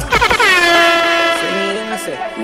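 DJ air-horn sound effect: one long blast that drops in pitch as it starts and then holds steady, with a lower tone joining near the end.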